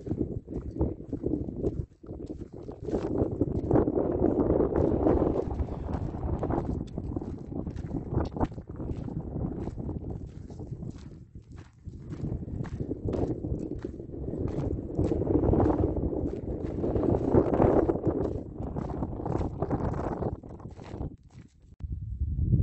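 Footsteps crunching on a sandy, gravelly mountain trail at a walking pace, over wind rumbling on the microphone in swells.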